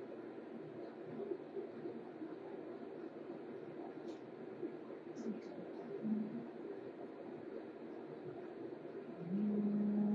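A low, steady background hum with faint breathing, then about nine seconds in a woman's voice begins a long chanted tone held at one pitch: the start of a closing chant.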